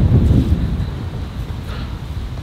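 Wind buffeting the microphone: a low rumble that is strongest in the first half second, then eases to a steadier low noise.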